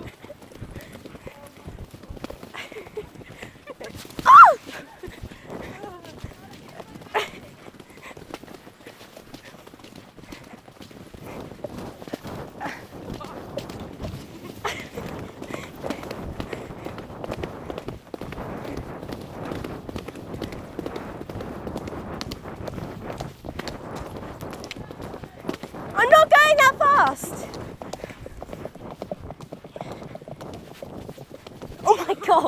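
Horse hooves beating along a wet, muddy track as a horse is ridden, a steady run of hoofbeats. A short loud cry that falls in pitch comes about four seconds in, and a second of voice, like a shout or laugh, comes near the end.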